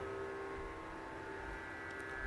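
Faint steady hum with several held tones underneath, in a pause between a man's speech.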